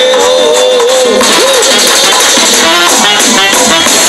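Loud live Latin band music through outdoor stage speakers, recorded close to the speaker stack: a held, wavering note for about the first second, then a busier percussive rhythm.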